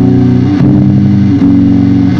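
Heavily distorted electric guitar through amplifier cabinets, playing sustained low chords that change about half a second in and again near a second and a half.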